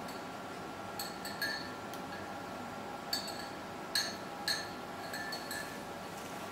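Light glassy clinks, each with a brief ring, coming irregularly over a steady electrical hum. The clearest clinks come about three, four and four and a half seconds in.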